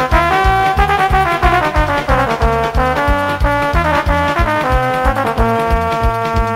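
Instrumental break in a Romanian folk song: a melody of held notes over a steady, quick bass beat, with no singing.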